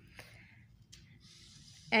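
Faint handling sounds of small items on a homemade foam-tray balance: a light tap about a fifth of a second in, then a soft rustle, over quiet room tone. A woman starts speaking right at the end.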